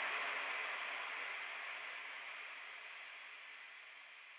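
Hissy noise tail at the end of the song, fading away steadily to near silence.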